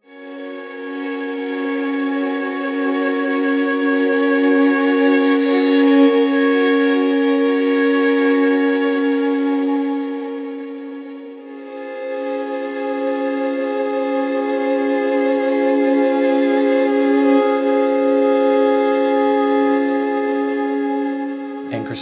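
Sampled solo violin (8Dio Studio Solo Violin library) playing a two-bow sul tasto arc: sustained notes bowed over the fingerboard with a soft, thin tone, swelling up and dying away on the first stroke, then swelling again on the second stroke from about halfway through and fading near the end.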